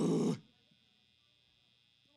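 A single harsh, growled 'check' shouted into a PA microphone during a soundcheck, lasting about half a second, then near silence.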